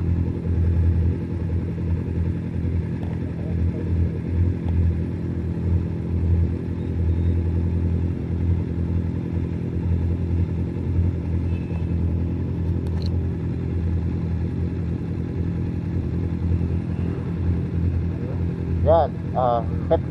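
BMW adventure motorcycle engine idling steadily while stopped. A short spoken exchange comes in near the end.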